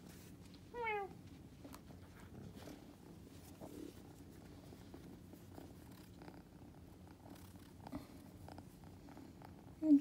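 A young kitten gives one short meow about a second in, falling in pitch, then purrs faintly and steadily while being stroked.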